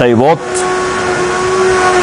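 A word of speech, then a steady, loud hiss with a constant humming tone underneath it.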